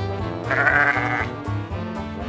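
A sheep bleating once, a wavering call of under a second starting about half a second in, over background music.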